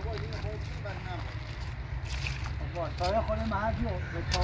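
People talking in short phrases over a steady low wind rumble on the microphone.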